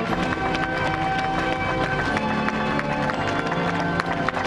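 Ceremonial band music with held notes, over scattered hand clapping from the crowd.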